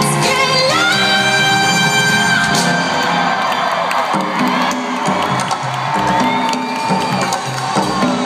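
Live pop music over an arena sound system, recorded from within the crowd, with the audience cheering and whooping; a held high note stands out for a couple of seconds near the start.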